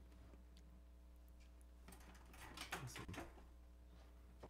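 Near silence: a steady low electrical hum, with a few faint clicks and rustles about two to three seconds in.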